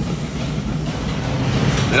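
Steady, fairly loud mechanical rumble with a low hum from commercial kitchen machinery.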